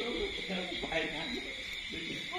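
A person's voice talking, over a steady high-pitched drone in the background.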